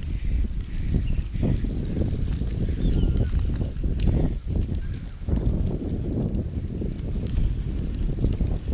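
Wind buffeting and handling noise on a phone microphone carried at arm's length while walking: a steady low rumble with irregular thumps and surges.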